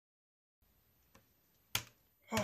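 A faint tick, then a single sharp click about three quarters of the way in, over faint hiss.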